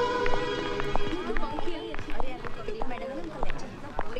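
Film music with held tones ends about a second in. It gives way to background chatter of many voices and a scattering of footstep-like knocks on a hard floor.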